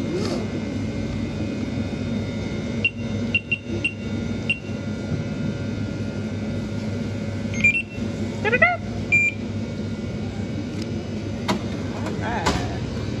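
Short electronic beeps over a steady electrical hum: a quick group of four about three to four and a half seconds in, then a few more around eight and nine seconds.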